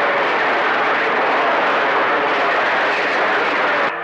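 CB radio receiver giving out a steady rushing static hiss between voice transmissions. It cuts off abruptly at the end when a voice comes back on.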